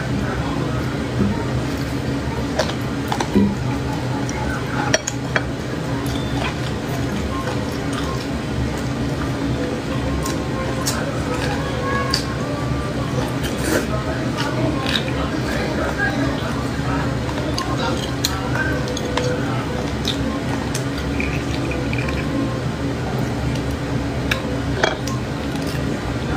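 A metal fork clinking and scraping against cooked beef marrow bone sections, with sucking and chewing of the marrow: many small, sharp clicks scattered over a steady background.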